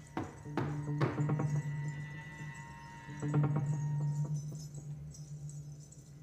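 Free-improvised jazz percussion: a few single drum strikes near the start and a quick cluster of hits about three seconds in, over a sustained low drone.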